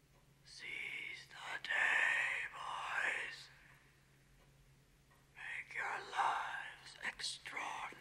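A man whispering slowly in two drawn-out, breathy phrases, the first about half a second in and the second from about the middle to the end, over a faint low hum.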